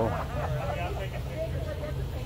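Faint talking in the background over the steady low hum of an idling vehicle.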